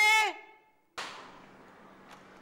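A man's voice trailing off on a word, then a moment of dead silence. About a second in, faint room hiss starts abruptly and slowly fades.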